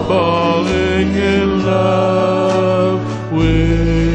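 Slow ballad backing track with sustained chords and a bass that changes note every second or so, under a man's voice holding a drawn-out sung note that wavers in pitch at the start.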